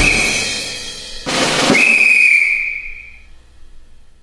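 The background music track ending on a high, whistle-like note. A held tone gives way to a hit about a second in, and then a last high note fades out.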